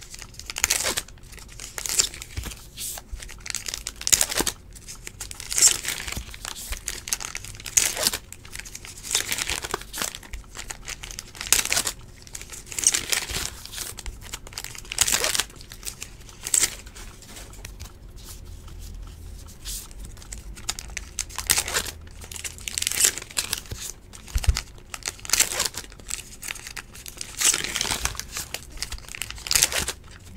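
Trading-card pack wrappers crinkling and tearing as packs are ripped open by hand, with cards being handled, in irregular bursts.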